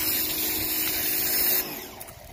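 Pressure washer spraying: a steady hiss with a low motor hum, cutting off suddenly about one and a half seconds in.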